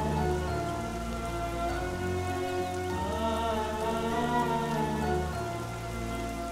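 Heavy rain falling steadily under a slow film score: held low notes that change every second or two, with a melody that slowly rises and falls above them.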